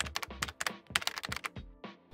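Rapid, irregular computer-keyboard typing clicks used as a sound effect, over faint music; the clicks stop shortly before the end.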